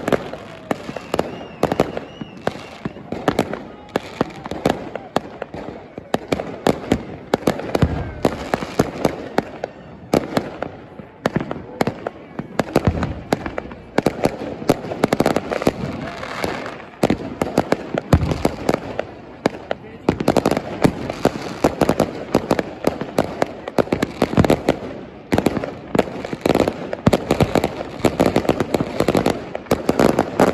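A large fireworks display, with many fireworks bursting in quick succession in a near-continuous run of bangs. It thins out somewhat around the middle and grows denser again in the last third.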